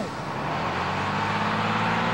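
Bus engine running close by, a steady low hum that comes in shortly after the start, over dense city street traffic noise.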